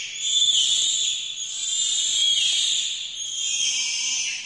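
Bonobos squealing and shrieking at a very high pitch while they wrestle, a continuous shrill chorus that wavers in pitch throughout.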